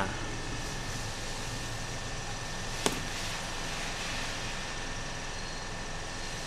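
Steady background hum of the workshop with one sharp click about three seconds in, a small hard object knocking at the bench.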